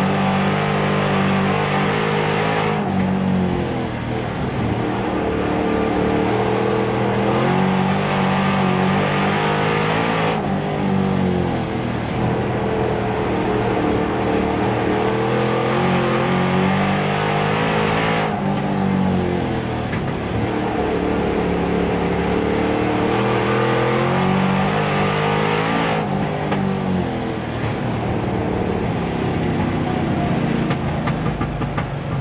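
Street stock race car's V8 engine heard from inside the cockpit as it laps a dirt oval, revving up hard down the straights and easing off into each turn about every eight seconds.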